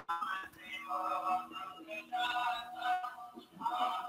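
Music with a singing voice, a melody of held notes over sustained tones, playing at a moderate level. A sharp click comes right at the start.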